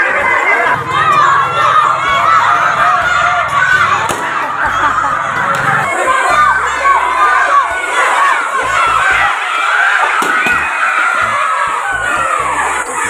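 A crowd of children shouting and cheering, many high voices at once.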